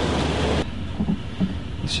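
Passenger train running along the track, a steady low rumble with a couple of soft knocks. A loud hiss of noise cuts off suddenly about half a second in, leaving the quieter rumble.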